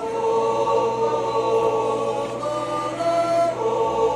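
Background music: a choir singing long, held chords.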